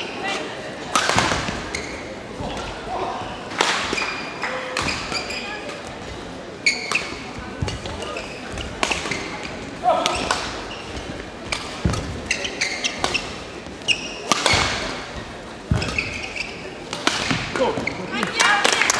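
Badminton rally in a large, echoing sports hall: repeated sharp racket strikes on the shuttlecock and short shoe squeaks on the court floor, with voices from around the hall.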